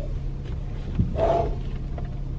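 Steady low rumble of a car running, heard from inside the cabin as it is driven off, with a single thump about a second in followed by a brief vocal sound from the driver.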